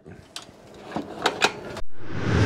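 A few short metallic clicks and knocks as the latch and door of a small homemade heat-treat oven are worked by hand.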